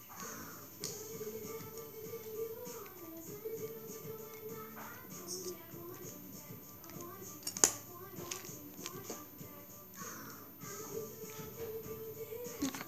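Music playing quietly in the background, with one sharp click about seven and a half seconds in.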